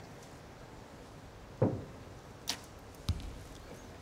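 A single compound bow shot: a sharp thump of the string and limbs on release about a second and a half in, followed by two fainter knocks, against a quiet background.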